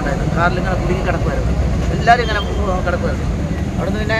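A man talking in Malayalam over a steady low rumble.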